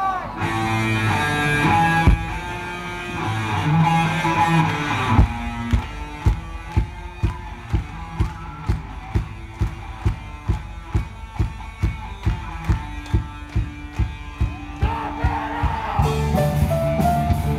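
A live band with electric guitars playing an intro. Held guitar notes give way about five seconds in to a steady beat of about two strikes a second, and the full band comes back in near the end.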